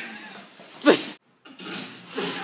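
A single short, loud cry with a falling pitch about a second in, followed by an abrupt cut-off of all sound.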